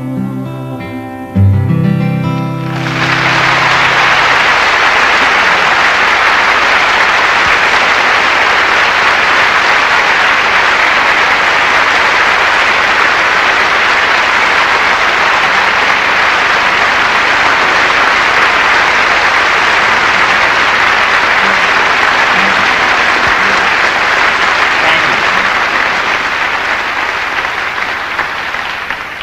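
A live song ends on a final chord about two seconds in. The audience then breaks into loud, steady applause that runs on for over twenty seconds and thins out near the end.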